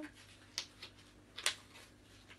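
Quiet room with two brief, faint clicks about a second apart.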